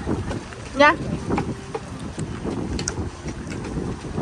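Wind rumbling on the microphone under faint voices, with a short spoken "yeah" about a second in.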